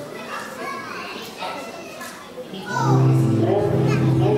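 Children and adults chattering on a stage, then near the end a loud held chord starts on a musical instrument, steady and unchanging.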